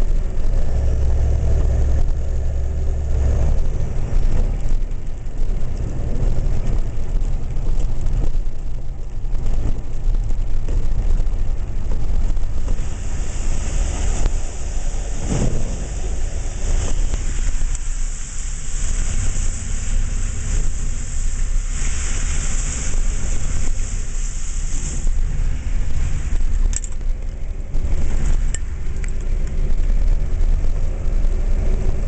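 Car driving, with steady engine and road rumble heard from inside the cabin. About halfway through, a high hissing rush comes in for roughly twelve seconds, with a single thump near its start.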